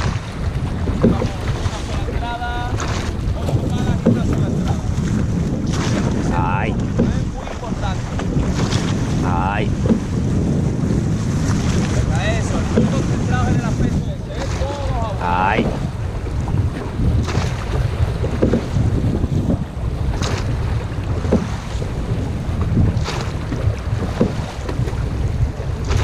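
Llaut being rowed: wind buffeting the boat-mounted microphone over water rushing along the hull, with a knock from the oars about every one and a half seconds as the crew takes each stroke. A few short squeaks come through now and then.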